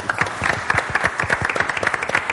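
Audience applauding: many rapid, overlapping hand claps.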